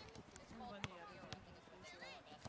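Faint, distant voices of players and spectators, with a couple of sharp taps of a soccer ball being kicked, the clearest just under a second in.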